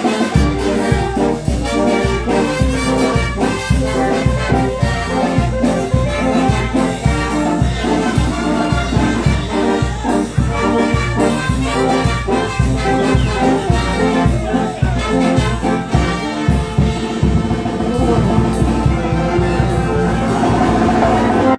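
Brass band playing live: horns, saxophone and tuba carrying the tune and harmony over a steady low beat.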